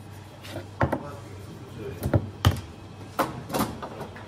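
Sharp metal clacks and knocks from espresso-making: a portafilter being tamped and handled, then fitted into the espresso machine's group head. There are several separate clacks, the loudest around halfway, over a steady low hum.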